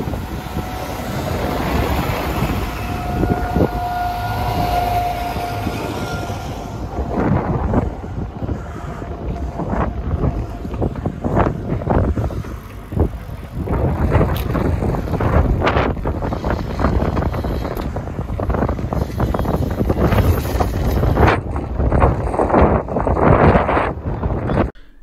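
Wind buffeting the microphone on a moving bicycle, over a low rumble of vehicles and machinery. A steady machine whine holds for a couple of seconds a few seconds in, and from about a third of the way in sharp knocks and clicks come again and again.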